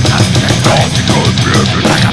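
Death metal, loud and dense: distorted guitars over rapid, pounding drums.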